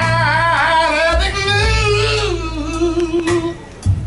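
Live blues band with a singer holding one long, wavering note over the bass. The note drops in pitch after about two and a half seconds and breaks off shortly before the end.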